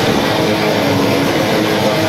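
Metal band playing live at full volume: distorted electric guitars over drums, a dense, unbroken wall of sound.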